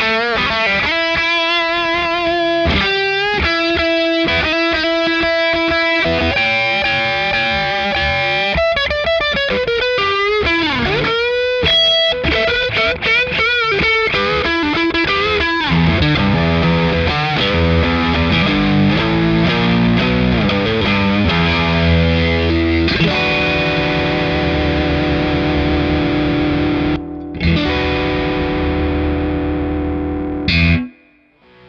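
Electric guitar through the Keeley Aria Compressor Drive's medium-gain overdrive. In the first half it plays single-note lead lines with bends and vibrato, and from about halfway it moves to lower, fuller chord riffs.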